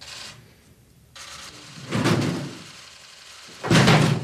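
IKEA Malm dresser tipping forward under the weight of a child-sized dummy hanging from its drawers. Wooden knocks and shifting come about two seconds in, then a loud thud near the end as it topples.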